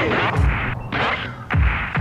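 Hip hop intro: deep, heavy drum hits recurring under a dense mix of sampled sounds, with swooping glides in pitch.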